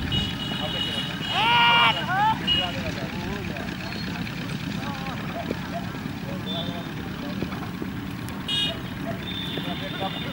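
Outdoor chatter of several voices with one loud, long held shout about a second and a half in, over a steady low rumble of traffic.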